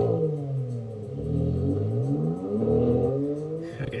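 Intro sound effect of an engine revving, its pitch sweeping down and up several times, ending just before speech returns.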